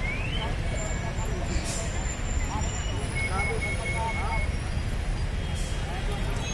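Outdoor crowd ambience: scattered voices of onlookers over a steady low rumble.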